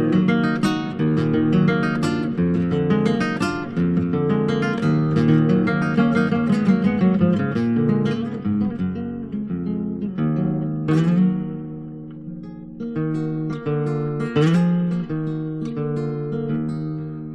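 Solo acoustic guitar playing an instrumental passage between sung verses, with busy picked notes at first and fewer, more spaced notes and strums from about eight seconds in.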